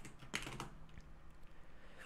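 Computer keyboard keystrokes: a few separate key clicks, most of them in the first half second, while a line of code is typed.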